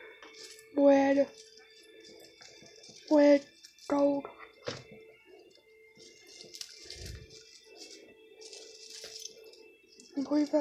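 A voice speaks a few short words, over faint steady background music. In the second half come the rustle of artificial Christmas tree branches being handled and a soft low thump about seven seconds in.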